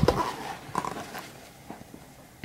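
Paper rustling as a picture-book page is turned and smoothed flat, dying away after about a second and a half.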